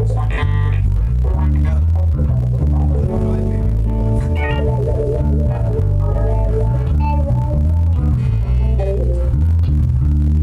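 Live band playing in a rehearsal room: a loud bass guitar line moving from note to note under sustained chords from a Nord Electro 3 keyboard.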